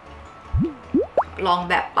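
Three quick rising 'bloop' sound effects, like cartoon drips, each pitched higher than the one before.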